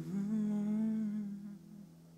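A man hums a last held wordless note, wavering slightly in pitch, over the final acoustic guitar chord ringing out; the hum stops about one and a half seconds in and the guitar fades.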